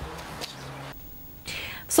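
Faint outdoor background noise with a brief low hum, then a cut to a quieter room and a short breath just before a woman starts speaking.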